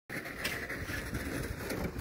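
Steady outdoor noise with a low, uneven rumble, typical of wind buffeting the microphone.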